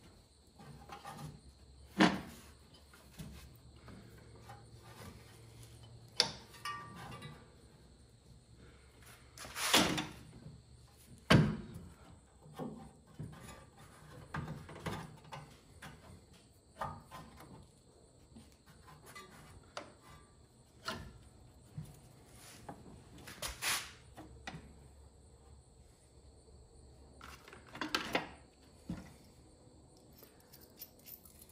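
Scattered metallic clinks, knocks and short scrapes of hand tools and parts handled in a tractor's engine bay while a new belt is fitted to the alternator pulley, with quiet gaps between them.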